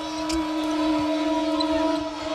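A single steady held tone, like a horn or a sustained musical note, sounding over the arena's background noise.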